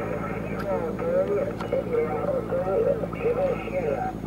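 Other amateur stations calling back over a single-sideband transceiver's loudspeaker: thin, telephone-like radio voices with the high tones cut off, over a steady low hum.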